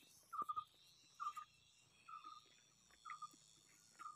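Faint short chirping calls from a small animal, four in all, about one a second, each a quick run of two or three notes.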